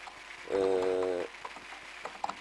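A man's voice holding a drawn-out hesitation 'ee' at one steady pitch for under a second. Around it are faint short clicks of computer keyboard typing.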